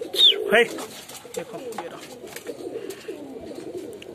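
Domestic pigeons cooing, low wavering coos from several birds overlapping throughout.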